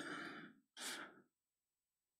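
A man's single breath into a close microphone, about a second in, just after the end of a spoken word fades away; then near silence.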